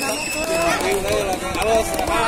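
Several young voices of volleyball players and spectators calling out and chattering over each other courtside.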